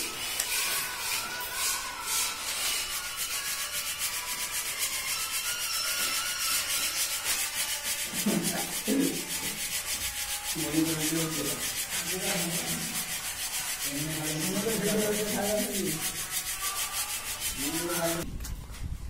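A round hand sieve shaken over a plastic sack, fine dry granular material rasping against the metal and mesh in a fast, steady rhythm.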